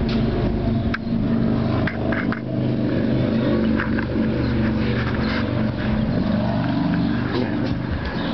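A motor vehicle engine running steadily with a low drone, with a few light clicks and knocks over it.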